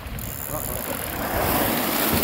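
Water rushing and splashing as a humpback whale breaches right beside a small boat, the noise building over the second half. A low rumble of wind on a phone microphone runs underneath.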